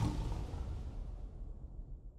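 Tail of a low boom from an end-card sound effect, fading steadily away, its deep rumble lingering after the higher part has died out.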